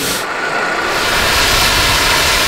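Gas cutting torch flame hissing steadily, the hiss growing brighter about a second in.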